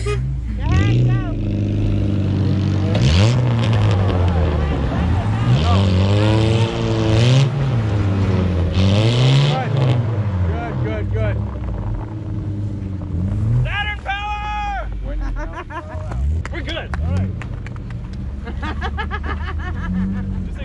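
Car engines revving up and down again and again as one car tows another out of deep snow on a strap, tyres spinning and throwing snow; the revving eases off in the second half.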